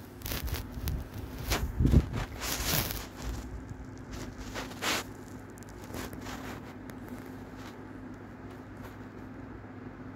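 Close rustling, crackling and scraping sounds, loudest about two seconds in, fading after about three seconds to a faint steady hum.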